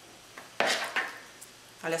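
Metal spoon stirring granulated tapioca soaked in hot milk in a plastic mixing bowl, knocking and scraping against the bowl: a sharp knock about half a second in, another about a second in, and lighter ticks between.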